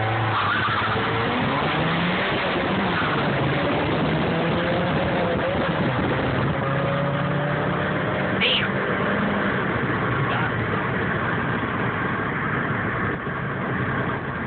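Honda Civic engine accelerating hard under full throttle in a street race, heard from inside the cabin over loud road and wind noise; its pitch climbs and falls back several times as it shifts gears.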